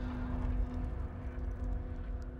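Low, steady rumbling drone with a single held low note, the sustained pad of a sombre documentary underscore.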